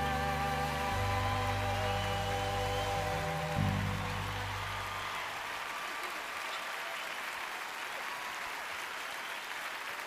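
A live band's closing chord held and ringing out, dying away about halfway through, with audience applause rising under it and filling the rest.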